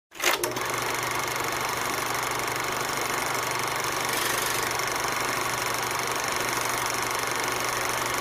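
Film projector running: a steady mechanical whir and rattle with a low hum underneath, opening with a short burst of clicks.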